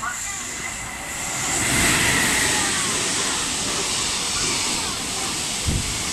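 JR Freight EF210 electric locomotive passing at speed under load, its traction motors working hard with a faint steady whine over the noise of the run, loudest as it goes by about two seconds in. The rolling noise of the container wagons follows, with a few wheel knocks near the end.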